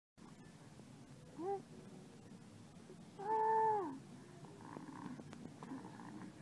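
A baby vocalizing while feeding from a bottle: a short, high coo about a second and a half in, then a longer, louder coo a little past the middle.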